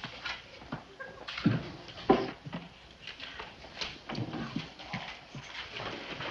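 High-heeled footsteps on a hard floor, an irregular run of taps and knocks, with a couple of louder thuds about one and a half and two seconds in.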